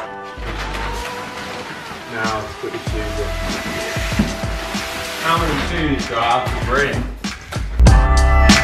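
Background music with a voice singing over it, likely sung vocals in the track.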